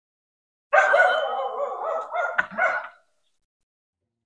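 A dog whining: a run of high, wavering cries lasting about two seconds, starting just under a second in.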